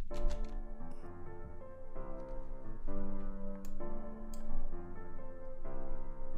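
Software piano (FL Studio's FL Keys) playing back a chord progression on D, F, C and G with low bass notes and a few added melody notes, the chords and notes changing about once a second. Two faint clicks sound in the middle.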